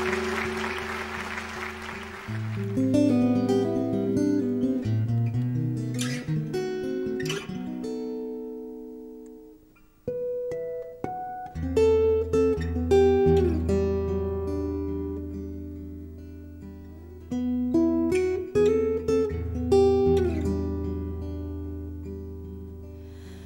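Acoustic steel-string guitar playing a solo introduction, picked notes with a few strummed chords. It almost stops about ten seconds in, then starts again. Applause fades out over the first two seconds or so.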